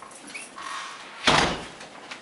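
A single short, loud thump about a second and a half in, over quiet room noise.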